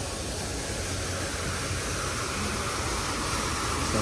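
Steady splashing hiss of an outdoor fountain's water jets falling into a stone basin, growing louder in the second half, over a low background rumble.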